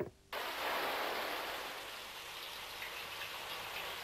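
Shower spray running, a steady hiss of falling water that starts abruptly about a third of a second in and eases off slightly.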